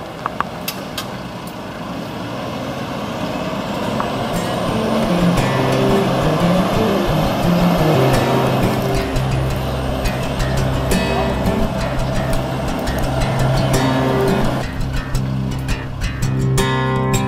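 Loaded log truck's diesel engine pulling away, growing louder over the first several seconds, after a few sharp clicks and knocks near the start. Music with steady, stepping notes comes in about five seconds in and plays over it.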